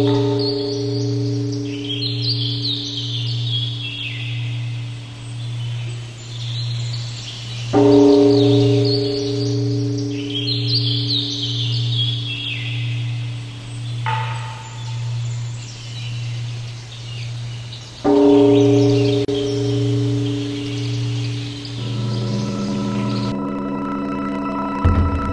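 A large temple bell rings on from a strike just before, then is struck twice more, about 8 and 18 seconds in, each stroke a long decaying ring over a low hum that wavers about twice a second. Birds chirp between the strokes.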